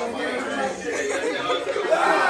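Several people's voices talking and calling out over one another: the chatter of a small group.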